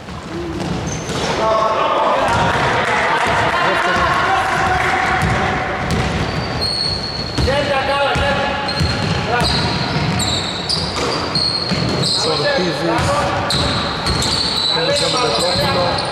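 Basketball game sounds in a reverberant gym: the ball bouncing on the wooden court, sneakers squeaking in short high chirps from about halfway through, and players' voices calling out.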